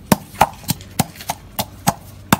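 Wooden pestle pounding lemongrass, garlic, shallots and chilli in a metal mortar: seven steady strikes, about three a second.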